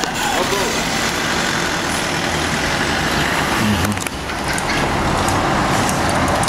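Road traffic on a paved town street: a motor vehicle driving by, a steady rushing noise that dips briefly about four seconds in, with voices over it.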